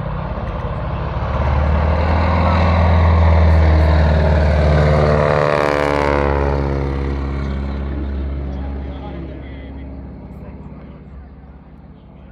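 A biplane's radial engine and propeller on a low fly-by, growing louder, passing overhead about six seconds in, then fading away.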